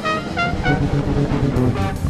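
Live electric jazz-funk band improvising: trumpet playing short notes over bass, electric guitar and a drum kit with timbales.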